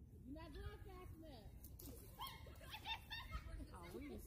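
Children's voices calling out and shouting from a distance, with no clear words, over a low rumble.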